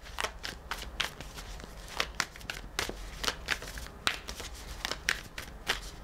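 A tarot deck being shuffled by hand: a run of irregular papery snaps and rustles, several a second.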